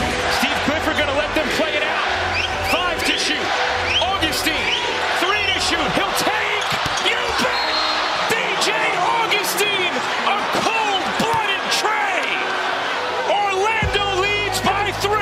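Live basketball court sound: sneakers squeaking on the hardwood and the ball bouncing, over the steady noise of an arena crowd.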